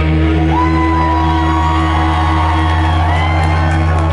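A rock band's guitar and bass chord held and ringing out as the drums drop away, with audience members whooping and shouting over it.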